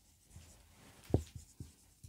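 Marker writing on a whiteboard: faint scratchy strokes with a few short taps, the sharpest about a second in.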